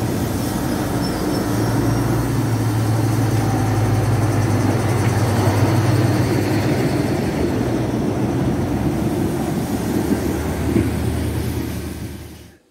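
British Rail Class 03 diesel shunter D2170 idling: a steady low engine drone from its Gardner eight-cylinder diesel, loudest about halfway through when heard right beside the engine casing.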